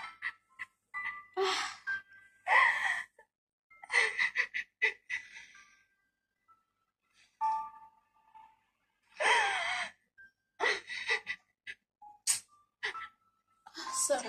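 A woman crying in short sobs and gasping breaths, in broken bursts with quiet gaps between them, over faint soft music.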